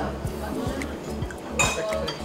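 Restaurant dining-room sound: background music with a steady bass line and murmured talk, under scattered clinks of dishes and cutlery, the loudest clink about one and a half seconds in.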